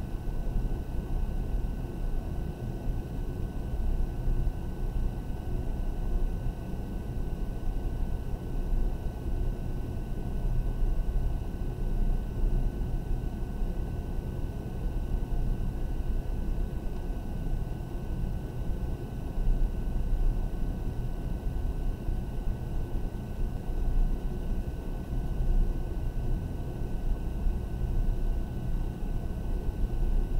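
Graphite No. 2 pencil shading dark on paper in repeated back-and-forth strokes: a continuous rubbing noise that swells and dips with the strokes, over a low rumble and a faint steady high whine.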